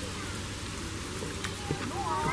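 A goat kid chewing dry hay held out by hand: a few crisp crunches over a steady hiss, with faint voices in the background.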